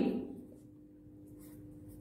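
Faint sound of a felt-tip marker pen writing on paper, over a low steady hum.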